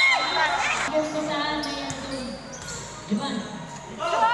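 Basketball game sounds in a covered court: sneakers squeak on the floor in the first half-second, then a voice calls out for about a second and a half.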